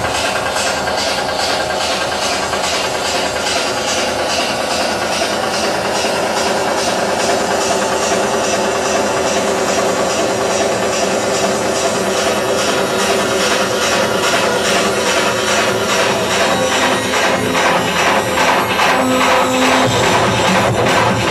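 Electronic dance music in a techno style, mixed by a DJ from vinyl turntables, with a steady, even beat and little deep bass.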